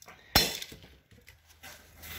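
A sharp clink of metal engine parts being handled on the workbench: one loud strike about a third of a second in, with a brief ring, then a few faint taps.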